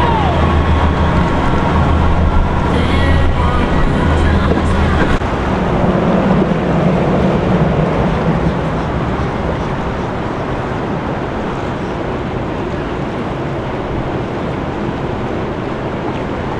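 Boat engine running with a steady low hum and people's voices over it; about five seconds in it gives way to a motorboat under way, its engine and the water rushing along the hull making a steady wash.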